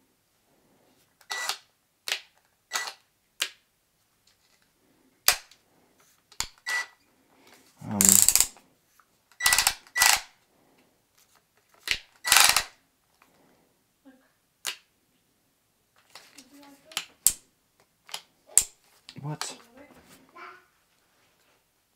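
Sharp plastic clicks and snaps from a cordless drill being handled and fiddled with as someone tries to unlock it. There are about fifteen separate clicks at irregular intervals, a few of them longer rasping snaps, the loudest about eight seconds in.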